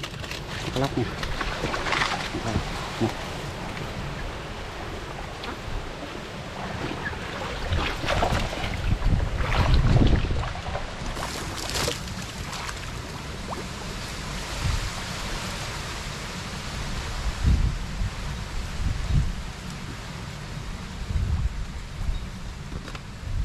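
Wind buffeting the microphone in uneven gusts, with scattered clicks and rustles from a wire-mesh fish trap being handled at the water's edge.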